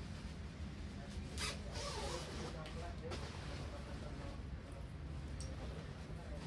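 Used clothing being handled and shaken out from a pile: soft fabric rustling with a few short swishes, one about a second and a half in and others near the three-second mark, over a steady low hum.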